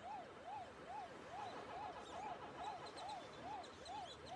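Faint electronic tone rising and falling in pitch over and over, about two and a half times a second.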